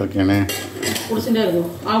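Steel kitchenware clattering: a few sharp metal clinks and knocks, with a voice over it.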